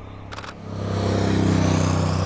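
A motorcycle approaches and passes close by, its engine sound swelling from about half a second in and loudest near the end. Just before the swell, a camera shutter fires a quick burst of clicks.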